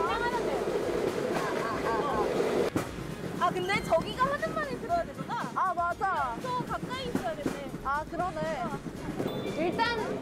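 Rail bike rolling along its track, a steady rattle with wind on the microphone, under women's voices talking from about three seconds in.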